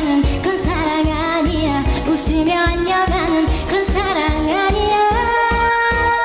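A woman singing a Korean pop-trot song live over a backing track with a steady drum beat. She holds a long note near the end.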